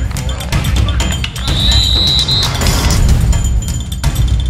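Background music with a heavy, steady low beat. About a second and a half in, a high steady whistle-like tone sounds for about a second.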